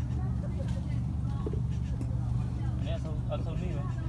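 A steady low rumble runs under faint, distant voices talking.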